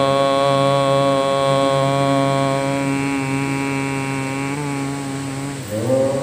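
A man's voice, amplified through a PA, holding one long chanted note at a steady pitch. It fades out about five and a half seconds in, and a new chanted note starts just before the end.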